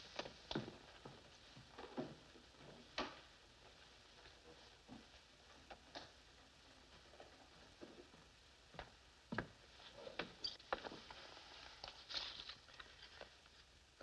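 Near silence broken by faint, irregular clicks and soft rustles: a briefcase being opened and photographs handled, with a few footsteps.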